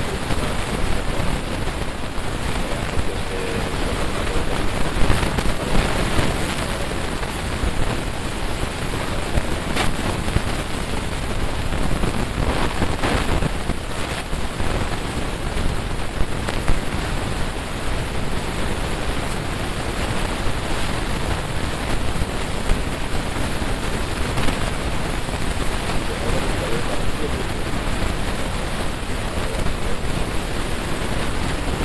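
Loud, steady rushing noise like heavy static fills the whole stretch, with no distinct events, and covers any speech under it.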